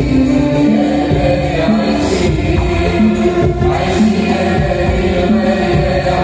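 Live vocal music: a girl and a boy singing together through microphones, with choir voices and a hand-drum accompaniment.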